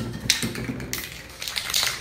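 A short hiss from an aerosol spray-paint can, about half a second long, then near the end the quick clicking rattle of the mixing balls in spray cans being shaken.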